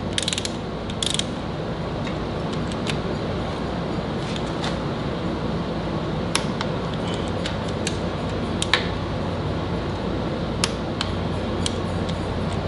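Hand ratchet clicking in short, scattered runs as the cam sprocket bolts on a Mopar 440 big-block are run down snug, over the steady hum of an air conditioner.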